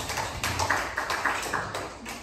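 Scattered applause from a small audience, the individual claps distinct, dying away near the end.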